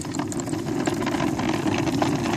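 Small toy sleigh rolling over a concrete floor, a steady rattling rumble full of rapid small clicks.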